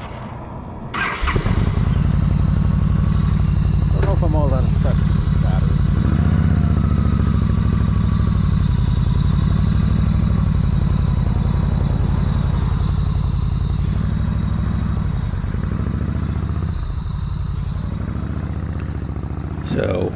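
Yamaha V Star 1300 V-twin engine starts about a second in and then idles steadily with a loud, low, even beat.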